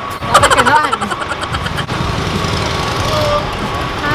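City street traffic: a vehicle engine rumbling steadily, with a thin steady high tone over it. A voice is heard briefly in the first second.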